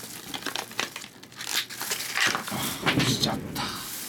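Stiff plastic packaging crinkling and crackling in irregular bursts as a razor's blister pack is wrenched and torn open. The crackling is loudest in the second half.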